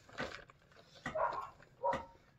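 A dog making a few short, quiet vocal sounds, with pauses between them.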